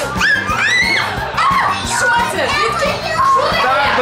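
Girls shrieking and squealing in high, rising-and-falling cries, in fright at a mouse let loose in the room, most of it put on for the father's benefit; background music runs underneath.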